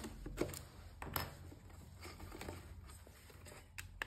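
Quiet handling noise: soft rustling and a few light taps as a cardstock cup carrier is moved about by hand, with the clearest tap about a second in and another near the end.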